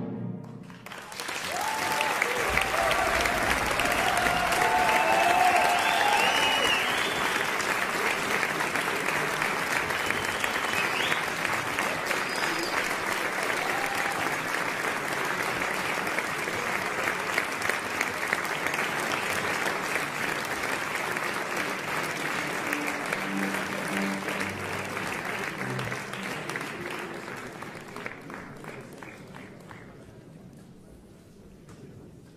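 Concert hall audience applause starts about a second in after the final chord of an orchestral piece, with a few cheers in the first several seconds. The applause holds steady, then dies away near the end.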